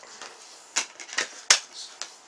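A few short plastic clicks and scrapes from a deliberately scratched-up DVD being handled, the sharpest click about a second and a half in.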